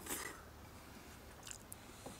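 Faint chewing of raw steak tartare, with a couple of soft mouth clicks about one and a half seconds in, over low background hiss.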